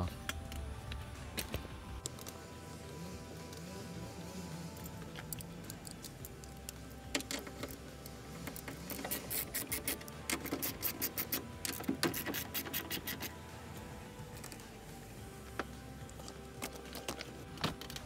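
Ratchet wrench with a 10 mm socket clicking in quick runs as it backs off the side mirror's mounting nuts, the runs densest through the middle stretch. Faint background music plays underneath.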